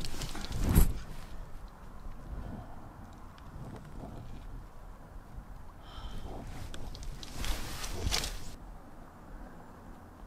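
A sharp clack a little under a second in as the step van's back door, or its bug screen, is swung open. It is followed by a quieter stretch and a second brief burst of rustling noise around eight seconds.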